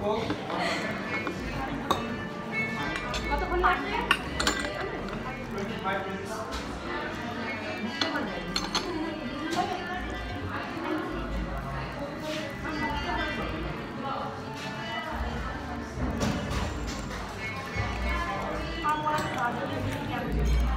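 A metal fork clinks against a plate several times, over background music and voices.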